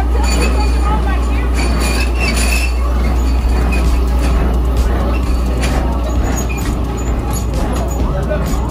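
Background voices and music over a strong steady low rumble, with a few light knocks partway through.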